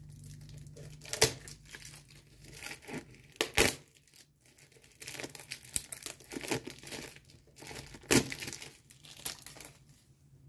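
Clear plastic wrap being torn and peeled off a box of cards, crinkling irregularly, with a few sharper crackles: the loudest about a second in, about three and a half seconds in, and about eight seconds in.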